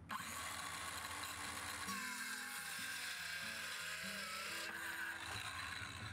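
Ryobi circular saw started and cutting across a small board guided by a speed square, running steadily for about five seconds and winding down near the end. Soft background music plays underneath.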